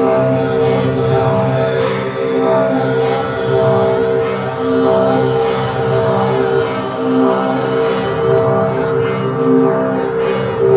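Live experimental music built on a steady drone: several low held tones sustained without a break, with shifting, fainter sounds layered above.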